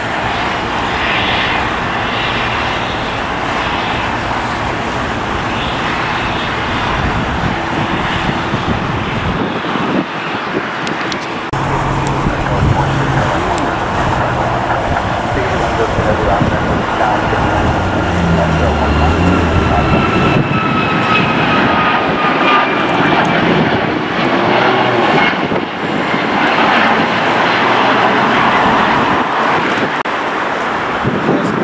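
Jet airliner engines at takeoff power, a loud steady rush, with a faint falling whine from about sixteen to twenty-three seconds in as a jet passes.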